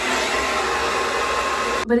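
Handheld hair dryer blowing on hair wound around a round brush: a steady rush of air with a faint whine. It cuts off suddenly near the end.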